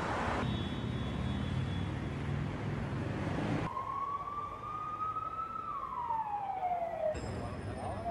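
Street traffic with engines running, then an emergency-vehicle siren: one tone from about four seconds in that climbs slightly and then slides down in pitch before cutting off abruptly.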